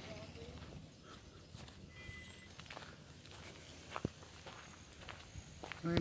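Faint, irregular footsteps on a grassy dirt path, with a few sharper ticks and one louder step about four seconds in.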